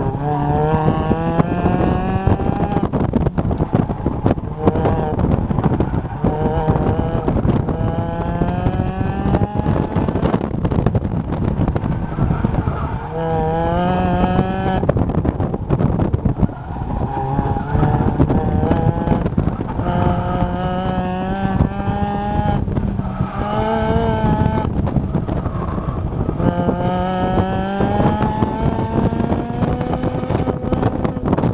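Mazda MX-5 Miata's four-cylinder engine heard from the open cockpit, revving hard over and over during an autocross run. Each time the pitch climbs under full throttle to about 7,500 rpm, then falls as the throttle is lifted and the brakes go on.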